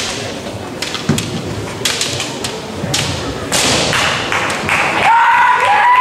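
Kendo bout: bamboo shinai clacking against each other and feet stamping on a wooden gym floor, a string of sharp knocks and thuds. About five seconds in, a fencer lets out a loud, long, high-pitched kiai shout.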